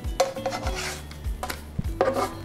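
A plastic spatula scraping across a nonstick electric skillet as it slides under and flips pancakes, in short scrapes. Background music with a steady bass beat runs underneath.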